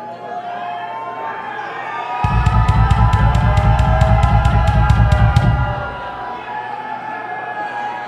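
Crowd cheering and whistling in a concert hall. About two seconds in, a drum kit comes in loud with a fast low roll on the kick drum under sharp, evenly spaced hits about six a second. It lasts some three seconds, then drops back to the cheering crowd.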